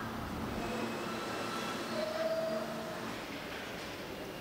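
New York City subway train running: a steady rumble with a short whine about two seconds in.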